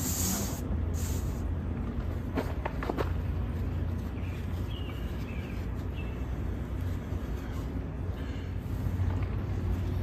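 Steady low outdoor background hum with a few light clicks about two to three seconds in, from hands handling the ashed tinder.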